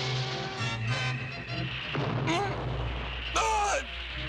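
Dramatic cartoon orchestral score with a deep rumble building in the second half. A man's short strained cries of effort come near the end.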